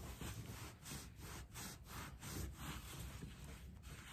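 A cloth rubbing dark wax into a paper-decoupaged board, working it in with faint, repeated back-and-forth strokes about three a second.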